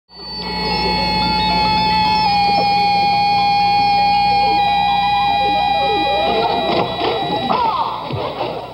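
Electronic synthesizer tones, fading in at the start and held as a steady chord whose notes shift in small steps. Near the end they fade under scattered knocks and short gliding sounds.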